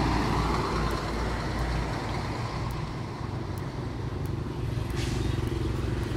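Road traffic: a steady low rumble of passing vehicles, with one louder pass at the start that fades over the first second or two.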